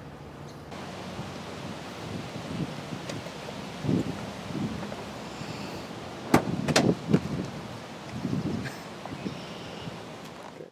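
A person clambering out of the cramped rear seat of a two-door Fiat 500: shuffling and soft knocks against the seats and door frame, with two sharp clicks about six and a half seconds in, over a steady background hiss.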